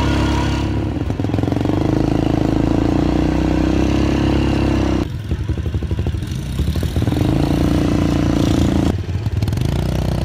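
Quad bike (ATV) engines running, with a steady tone that drops to a lumpy idle putter for a couple of seconds midway and again briefly near the end.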